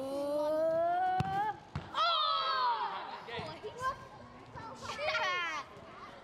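Children's voices shouting and cheering: one long, rising drawn-out shout, a single sharp knock just over a second in, then shrill high-pitched shouts twice more.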